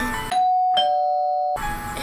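Ding-dong doorbell chime sound effect: a higher tone, then a lower one joining it, ringing together for about a second before stopping abruptly.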